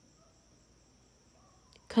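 Faint, steady high-pitched chirring of crickets in a pause in speech; a woman's voice starts again near the end.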